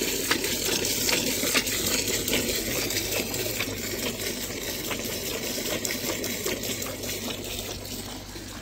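Cow being milked by hand: streams of milk squirting from both hands in turn into a part-filled enamel bucket, hissing and splashing into the froth.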